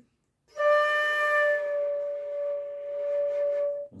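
Concert flute playing one long, steady D (about 590 Hz), starting about half a second in and held for over three seconds. It is the plain reference D, before the bent C-sharp is played on the same fingering.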